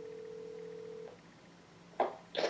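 Phone ringback tone from a smartphone on speakerphone: one steady ring of an outgoing call that stops about a second in, faint.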